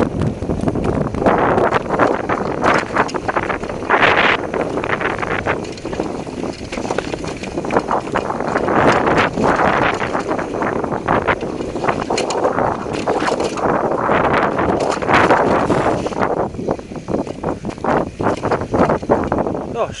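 Mountain bike descending a rough dirt trail at speed: tyres rolling and skidding over dirt, rocks and leaf litter, with the chain and frame rattling and knocking over bumps, and wind buffeting the helmet-camera microphone.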